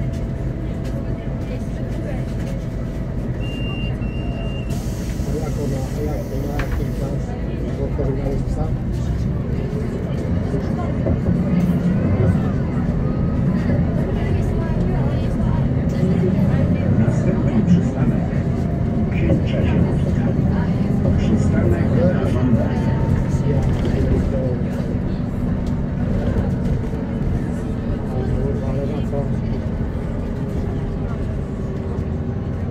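Onboard sound of a Solaris Urbino 12 III city bus under way: its DAF PR183 six-cylinder diesel running, with the ZF 6HP-504 six-speed automatic gearbox adding a whine that rises and falls in pitch as the bus speeds up and slows. The drivetrain grows louder through the middle.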